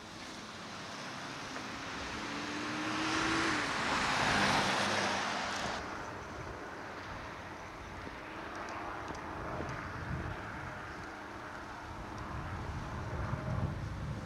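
A car passing by on the street: its noise builds over a few seconds, peaks about four seconds in, and fades, with its engine tone dropping in pitch as it goes past.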